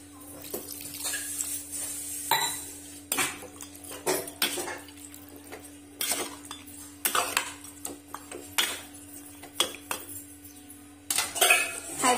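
A ladle stirring mutton curry in an aluminium pressure cooker pot, knocking and scraping against the metal sides in irregular clinks, with a louder flurry near the end. A steady low hum runs underneath.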